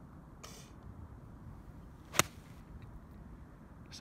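A golf wedge strikes a ball off fairway turf with a single sharp click about two seconds in.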